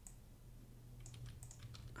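Faint keystrokes on a computer keyboard: a scattering of light, irregular clicks beginning about a second in, over a low steady hum.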